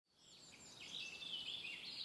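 Faint bird chirping, starting about a second in.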